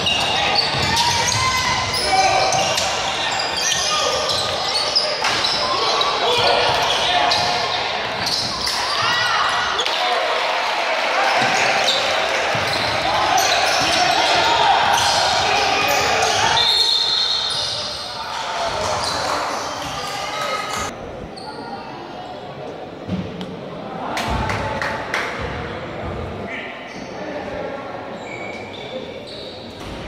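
Basketball game in an echoing gym: indistinct shouting and chatter from players and spectators, with a ball bouncing on the hardwood floor. The noise drops noticeably after about eighteen seconds.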